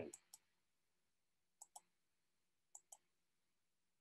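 Faint computer mouse clicks in quick pairs, a double click about once a second, with near silence between.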